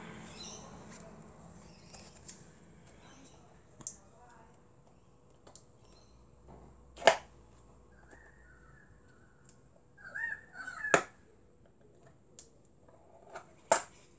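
A plastic slime tub being struggled open: a few sharp clicks and snaps of the stiff plastic lid, two of them much louder, with quiet handling rustle between.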